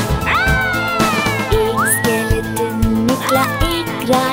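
Upbeat backing music of a children's song, with three long gliding cries over it, each rising sharply and then sliding slowly down in pitch.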